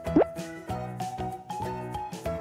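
Cheerful background music with a steady beat. Just after the start, a quick upward-sliding bloop sound effect cuts through it.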